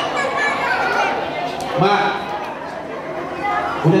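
A seated crowd of many voices chattering at once in a large hall, with a man's voice on a microphone speaking a single word about two seconds in and again near the end.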